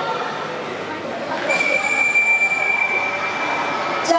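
A referee's whistle blown in one long, steady, high-pitched blast, starting about a second and a half in and cutting off sharply after about two and a half seconds, typical of a signal ending a timeout.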